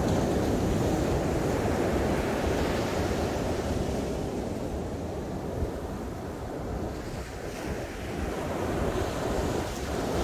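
Ocean surf breaking and washing up a sandy beach: a steady rushing wash that eases off in the middle and swells again near the end as another wave breaks.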